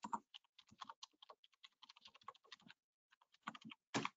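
Faint typing on a computer keyboard: a quick, irregular run of keystrokes, a pause of under a second, then a few more keys near the end.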